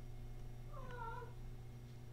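One faint, short pitched call, about half a second long, whose pitch dips and turns back up, over a steady low electrical hum.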